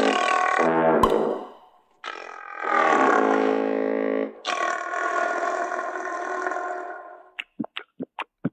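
Cartoon score of low, held wind-instrument notes in three long stretches, with brief breaks between them. Near the end comes a quick, evenly spaced run of short gulping sounds, about five a second.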